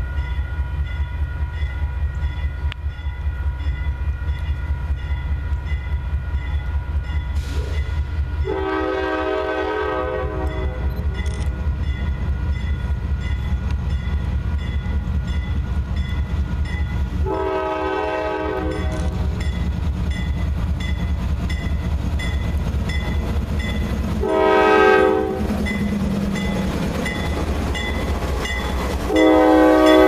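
Diesel freight locomotive running with a steady, deep throbbing rumble as it nears and passes, sounding its multi-note air horn: two long blasts, one short blast, and a final blast beginning near the end. This is the long-long-short-long pattern of a grade-crossing warning.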